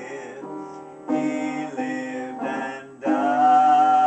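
A man singing to his own upright piano accompaniment, in short phrases; about three seconds in he moves into a loud held note with vibrato.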